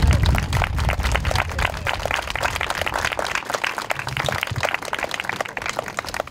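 Audience applauding: dense clapping that gradually thins out toward the end.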